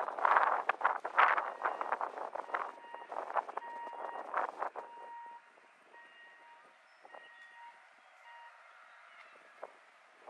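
Footsteps on wooden dock planks, a rapid run of irregular knocks and scuffs that thins out about halfway through. Faint short beeps sound on and off over a quiet background after that.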